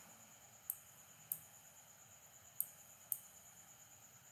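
Four computer mouse clicks in two pairs, each pair about half a second apart, over a faint steady hiss.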